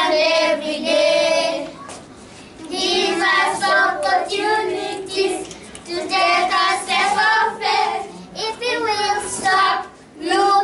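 A group of children singing together in phrases, with short breaks about two seconds in and again near eight seconds.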